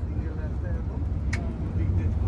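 Volvo multi-axle bus cruising at highway speed, its engine and tyre rumble heard from inside the driver's cab. A single sharp click falls a little past the middle.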